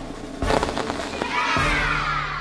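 A sudden pop about half a second in, followed by a run of crackles, like a confetti popper going off, over music. Near the end come long gliding tones that rise and then fall.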